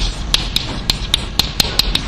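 Chalk writing on a blackboard: a run of quick, sharp taps and short scrapes as the chalk strikes and moves across the board, about four a second.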